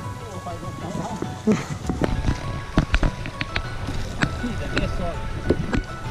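Background music with held tones over irregular wooden knocks and clatter: footsteps on the planks of a wobbly wooden footbridge.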